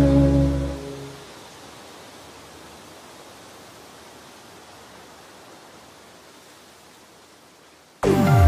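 Background music fading out about a second in, leaving a faint, steady hiss that slowly fades further.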